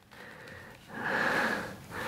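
A person breathing out audibly: one soft breathy hiss of about a second, starting about a second in.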